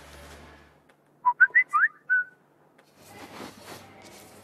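Smartphone message notification tone: a quick run of about five short, chirping whistle-like notes, some sliding upward, ending on a brief held note.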